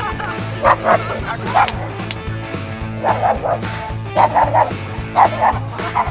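Small dog barking in short, separate barks, about ten in several bunches, over background music.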